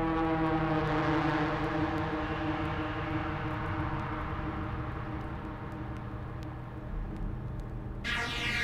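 Dark drum and bass mix played from vinyl in a beatless breakdown: a sustained synth drone chord with a hissing noise sweep that swells in the first few seconds and slowly fades.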